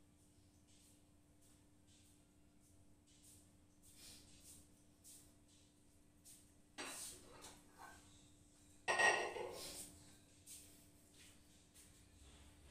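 Quiet kitchen room tone with a faint steady hum and soft scuffs, then two louder clatters of kitchenware about seven and nine seconds in, the second the loudest.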